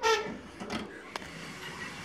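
Oven door being shut, with one sharp click about a second in.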